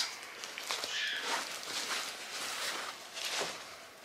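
Rustling and crackling of a woven palm-leaf basket bag as it is drawn out of a fabric dust bag and handled, in several separate rustles.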